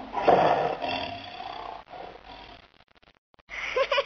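Lion roaring, a single loud roar that fades away over about two and a half seconds. A child's voice begins near the end.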